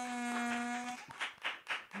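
A harmonica blows one steady held note for about a second, then short hand claps follow in a steady rhythm, about four a second.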